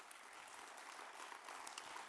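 Faint applause from an audience, many people clapping steadily.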